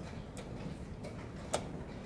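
Two sharp clicks from blitz chess play at a wooden board and chess clock, a faint one early and a louder one about a second and a half in, over the low hum of a large hall.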